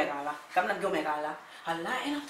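A woman talking, in speech with brief pauses.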